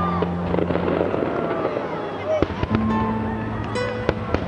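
Aerial fireworks shells bursting, a cluster of sharp bangs about two and a half seconds in and more near the end, heard under music with held notes and a melody.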